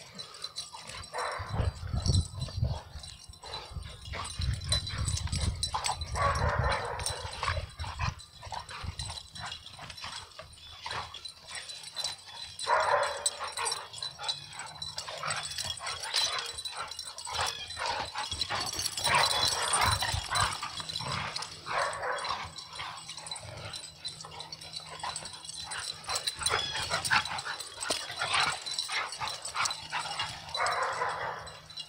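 Two pit bulls playing rough, giving dog vocalizations in repeated bursts a second or two long every few seconds throughout.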